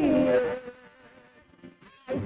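A woman singing a held, wavering note in a praise song, which ends about half a second in; a faint thin wavering tone lingers afterwards.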